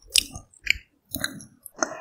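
Close-miked eating sounds: sips of cold noodle broth from a wooden spoon and chewing, in about four short bursts with near silence between them.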